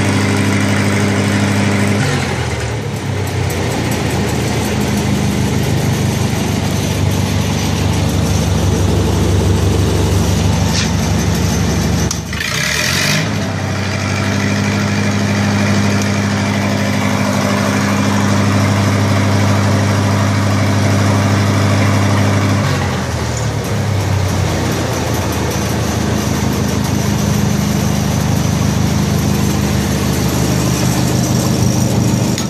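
Lincoln SA-200 welder's engine running steadily, its speed shifting a few times, about two, twelve and twenty-three seconds in. A short noisy burst comes about twelve seconds in.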